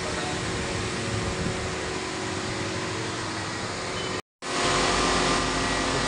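A three-motor glass edging and beveling machine running with a steady motor hum and grinding noise. The sound cuts out completely for a moment about four seconds in, then comes back slightly louder.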